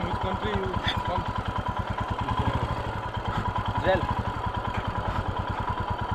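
Motorcycle engine idling low as the bike creeps along at walking pace, making an even, rapid chug of exhaust pulses. Faint voices of people nearby come through briefly.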